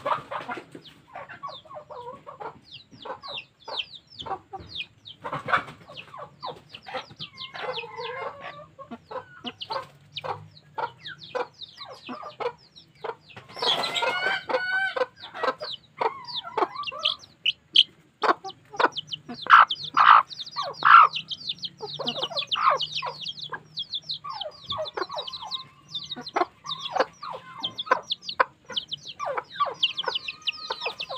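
Chickens in a coop with a red junglefowl rooster, clucking and calling in short, quick notes throughout. There is a dense burst of calls about fourteen seconds in, and the loudest calls come around twenty to twenty-one seconds in.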